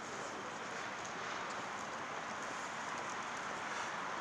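Steady outdoor city street ambience: an even hiss of background noise, like distant traffic and wet-street rush, with faint scattered ticks.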